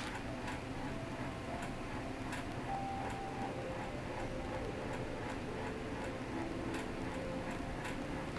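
Quiet room tone: a steady low hum with a few faint, scattered ticks and some faint soft tones.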